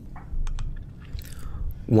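A few faint mouth clicks from a man narrating into a close microphone as he pauses between sentences, over a low rumble. His voice comes back in at the very end.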